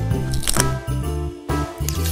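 Background music with a steady beat and a bass line, with two short sharp clicks, one about half a second in and one near the end.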